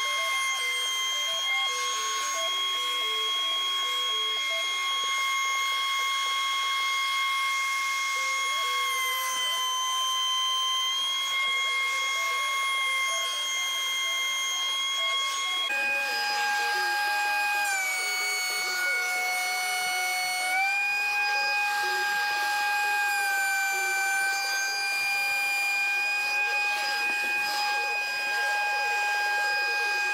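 DeWalt thickness planer motor running with a steady high-pitched whine, sagging briefly in pitch and recovering a few times as it takes load. About halfway through the whine drops suddenly to a lower pitch and holds there.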